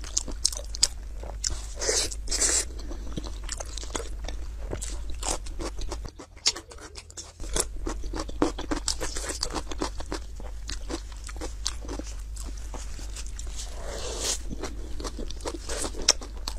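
Close-miked eating sounds: chewing, with the wet, sticky handling of sauce-glazed braised meat in plastic-gloved hands, heard as a dense run of small clicks and smacks. They go briefly quieter about six seconds in.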